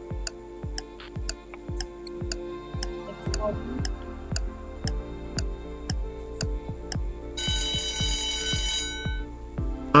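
Quiz countdown-timer sound effect: steady clock-like ticking over background music with a repeating beat. An alarm-clock ring lasting about a second and a half follows a little past halfway, signalling that time is up.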